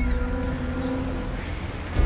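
Suspense underscore: a low held drone with a deep rumble underneath, fading gradually, before a louder, fuller cue of held notes comes in right at the end.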